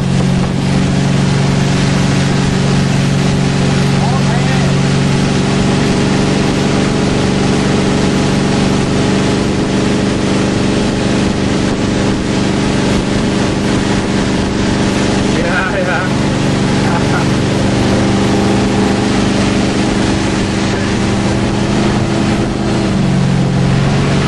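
Motorboat engine running steadily under way while towing a wakeboarder, with wind and rushing water over it; the engine note shifts slightly near the end.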